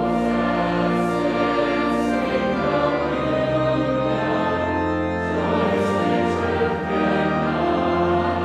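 Congregation singing with organ accompaniment, slow sustained chords that change every couple of seconds under a deep bass note.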